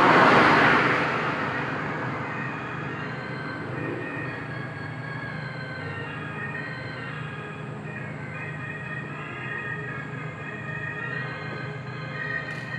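Ambient instrumental music: a swell of noise that peaks right at the start and fades over about two seconds, then a steady low hum under slowly shifting, sustained high tones.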